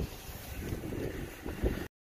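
Wind buffeting a handheld phone's microphone outdoors: a low, uneven rumbling noise with a brief louder thump near the end, then the sound cuts off suddenly.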